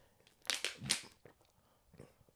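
Faint crinkling of a thin plastic water bottle being handled: two short crinkles about half a second apart.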